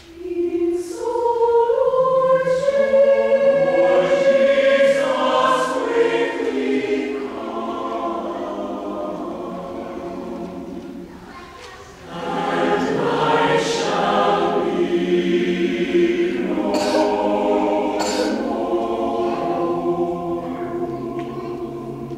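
Mixed choir of men and women singing a cappella. The voices enter at the start, hold one long phrase, break briefly about halfway through, then sing a second phrase that fades toward the end.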